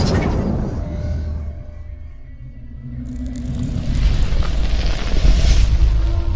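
Cinematic logo-reveal sound design over music: a deep boom dies away into a low rumble, then a rumbling swell builds up over the last few seconds.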